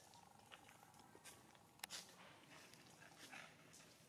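Faint rustling of dry leaves as a baby long-tailed macaque crawls through leaf litter, with one sharp click just under two seconds in.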